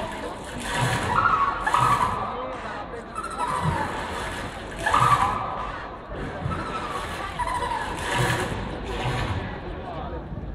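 Amplified light-show soundtrack: voice-like cartoon-character sounds, some gliding in pitch, mixed with a swish and a low bump about once a second, over crowd noise.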